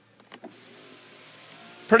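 A power window motor in a 2004 BMW 745Li running with a faint steady whir, with a few soft clicks about half a second in.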